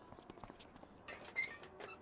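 Mostly quiet, with a few faint clicks and one short, light metallic clink about a second and a half in.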